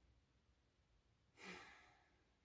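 A woman's single breathy sigh about one and a half seconds in, against near silence.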